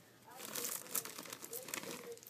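Crinkling packaging being handled, a rapid run of small crackles that starts about a third of a second in.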